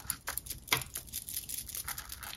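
Cross Aventura fountain pen nib scratching over paper in short, irregular strokes. The pen is hard-starting and writes dry, with no ink yet flowing from the new cartridge.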